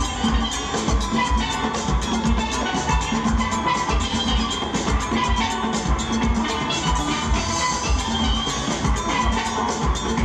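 A full steel orchestra playing live: massed steel pans ringing out a busy melody and chords over a steady low beat about twice a second.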